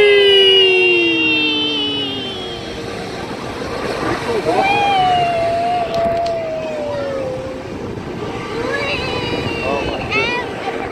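Riders whooping on a spinning chair-swing ride: one long drawn-out yell sliding down in pitch over the first two and a half seconds, then a second, higher long call that slowly falls from about four and a half to seven and a half seconds in, over a steady rushing noise.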